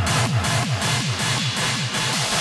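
Hardcore industrial techno from a 160 BPM DJ mix: a fast, even run of distorted kick drums, each dropping in pitch, over a harsh noisy layer. Just after it begins, the deepest bass drops away and the kicks sound thinner.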